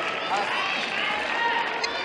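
Several people's voices overlapping, calling out and talking in a gymnasium during a pause between badminton rallies.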